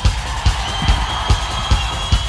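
Rock band playing live between sung lines: a steady drum beat with bass, and a single high note held from about a third of the way in.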